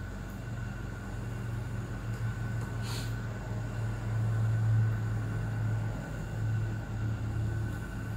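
A steady low hum with a fainter high steady tone above it, and one brief click about three seconds in.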